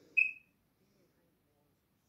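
A single short, high-pitched tone, about a quarter of a second long, just after the start, fading slightly as it ends; otherwise faint low background murmur.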